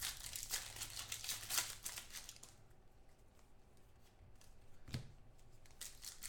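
A 2014 Contenders football card pack's wrapper being torn open and crinkled by hand, busiest in the first two seconds. A single soft knock comes about five seconds in.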